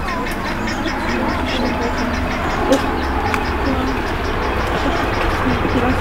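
Steady outdoor background: a low, constant rumble with a fast, even, high-pitched ticking running through it, and faint voices in the distance.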